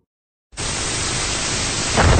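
Television-style static hiss as a sound effect, cutting in suddenly about half a second in after complete silence, then holding steady.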